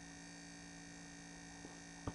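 Faint steady electrical mains hum on the recording, with one faint tick about a second and a half in.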